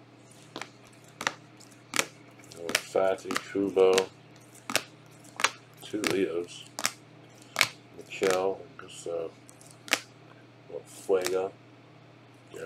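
Rigid plastic top loaders holding trading cards clicking against one another as a stack is flipped through by hand, a sharp click roughly every second, with low muttering in between.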